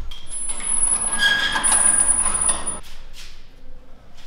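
Metal barred grille door being pushed open: a long scraping squeal of metal, lasting about two and a half seconds and stopping abruptly.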